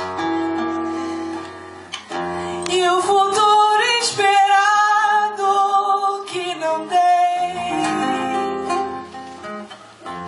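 A woman singing live over a classical guitar. Plucked guitar notes run throughout, and her voice comes in strongly about three seconds in with long held notes and vibrato, then eases off near the end.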